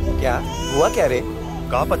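A baby crying: one drawn-out wail that rises and then falls, over steady background music.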